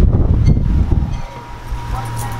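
Wind buffeting the camera microphone as a heavy low rumble, with a steady low hum coming in about a second in.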